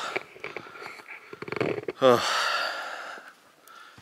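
A man breathing hard, winded from climbing a steep mountain trail, with a short grunted 'uh' about halfway through followed by a long heavy exhale.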